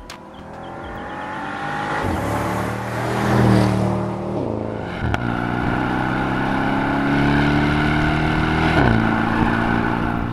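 A Bentley Flying Spur V8's 4.0-litre twin-turbo V8 accelerates toward and past, its note climbing and loudest as it goes by, then falling away. It is then heard close up from alongside the car, pulling steadily under load, with a quick drop in pitch near the end as the dual-clutch gearbox shifts up.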